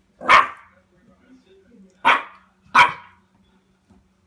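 Cairn terrier puppy barking three times: one bark just after the start, then two more close together about two seconds in.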